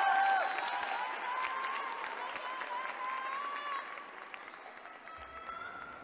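Arena audience applauding, the clapping fading away steadily over a few seconds.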